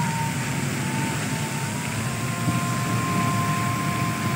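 Steady low rumble of street traffic, with a thin steady high tone above it; a second, lower tone joins about halfway through.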